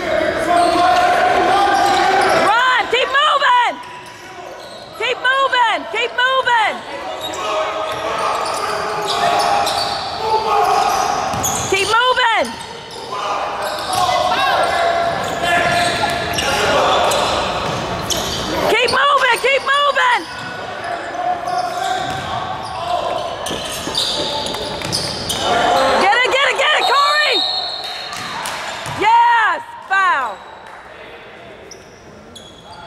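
Basketball shoes squeaking on a hardwood gym floor in about six short bursts of squeals, over a steady background of spectators' voices in a large hall.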